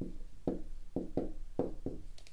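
Dry-erase marker writing on a whiteboard: a quick series of about eight short strokes, roughly four a second.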